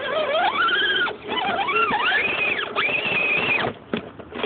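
Axial SCX10 crawler's electric motor and drivetrain whining as the throttle is worked. The pitch rises, drops off, climbs again, holds high for about a second, then cuts off shortly before the end.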